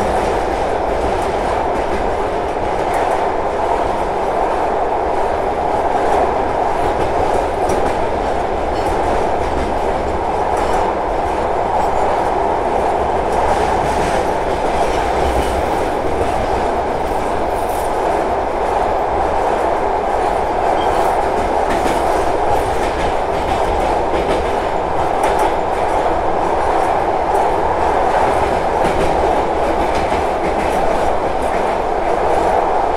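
Passenger train coaches running across a steel truss railway bridge: a steady rumble of wheels on rail with light clatter throughout.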